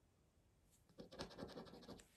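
A round plastic scratcher disc rubbing the coating off a scratch card: faint, quick short strokes starting about halfway in, after a near-silent first second.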